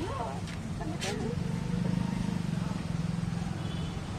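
Low, steady hum of a motor vehicle engine that swells briefly mid-way, with two sharp taps in the first second and voices over it.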